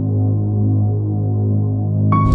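A low, steady drone with a stack of held overtones: an ambient soundtrack drone.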